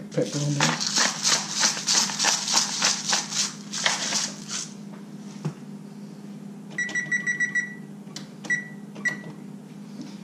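A seasoning shaker shaken in a quick run of rattling shakes, about four a second, for about four seconds. Later come a few short, high electronic beeps, a rapid cluster and then two single beeps.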